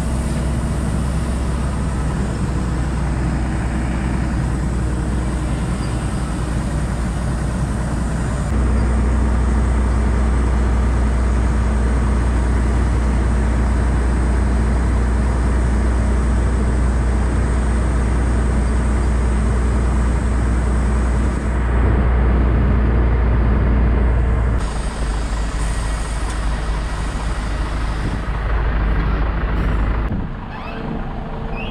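Iveco Eurostar tractor unit's diesel engine running steadily while its tipper semi-trailer is raised to dump a load of grain, with the grain pouring out of the tipped body. The engine sound steps up louder about eight seconds in and shifts again about three quarters of the way through.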